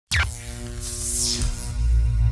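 Electronic intro music with a deep pulsing bass, starting abruptly with a falling swoop. A whoosh sweeps down through it about a second in.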